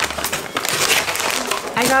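Plastic packs of makeup sponges crinkling and rustling as they are handled and lifted out of a cardboard box.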